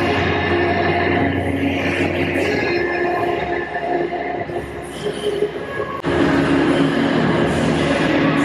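Music with held chords that change about three seconds in and again about six seconds in.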